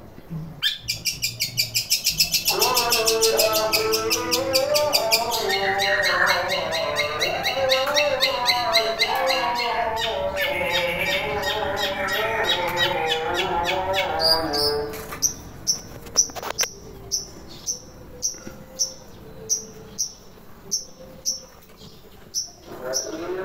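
Long-tailed shrike (cendet) calling loudly: a fast chattering run, then a long varied warbling song with low wavering notes, in a mimicry the keeper likens to an Asian pied starling (jalak suren). From about 15 seconds in, it switches to sharp single chirps repeated about three every two seconds.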